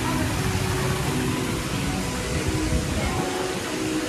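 A steady rushing noise with faint, held music notes underneath.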